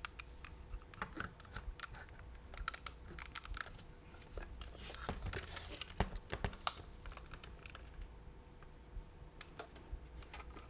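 A camera body and its metal rigging plates being handled by hand: irregular small clicks, taps and light scrapes of metal and plastic parts, with a sharper click about six seconds in.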